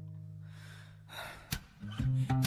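Acoustic guitar and bass notes of an acoustic-session ballad ringing out and fading, then a quick breath in and a sharp click before the music and singing come back in.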